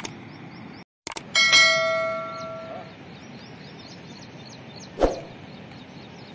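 A metal object struck once, ringing with a bell-like tone that fades over about a second and a half, just after a brief dropout to silence. High short chirps repeat several times a second throughout, and a dull thump comes about five seconds in.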